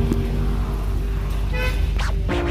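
Car horns in city traffic, heard from inside a car: a long steady honk, with a shorter, higher toot about one and a half seconds in.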